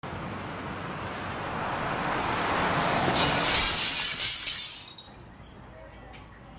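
A track-intro sound effect: a swell of rushing noise that builds for about three and a half seconds, peaks in a hiss, and dies away about five seconds in, leaving a faint background.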